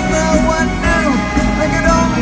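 Live band music from a pop-rock concert, recorded from among the audience.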